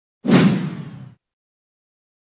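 A single whoosh sound effect with a heavy low end for a logo intro. It starts suddenly and dies away within about a second.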